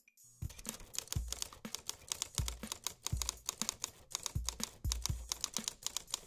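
Rapid computer-keyboard typing, a dense run of fast clicks starting about half a second in, with a soft low thud about every half second.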